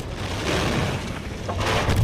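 Film sound effect of a bomb blast in a closed room: a dense, noisy rush with deep rumble going on after the detonation, easing a little and swelling again near the end.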